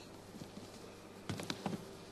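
Quiet room tone with a steady low electrical hum, and a quick cluster of three or four soft clicks and knocks about a second and a half in.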